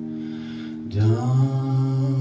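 Live folk band music with upright bass, electric guitar and voices: a held chord fades slightly, then a louder new note comes in about a second in and is held.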